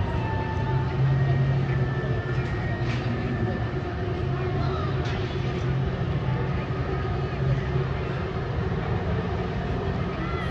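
A steady low rumble, like an engine or machinery, with faint voices in the background.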